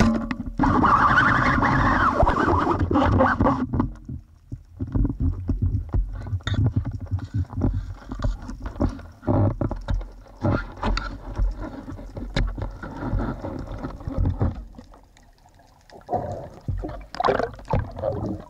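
Underwater, a Seac Asso 90 band speargun fires with a sudden jolt at the start, followed by about three seconds of loud rushing and rattling. Then come uneven knocks, rubbing and water noise as the shooting line is hauled in hand over hand.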